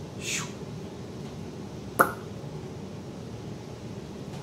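A plastic cup set down on a plastic tabletop with one sharp click about halfway through, over a steady low background hum. A brief soft rustle of the cups comes just before.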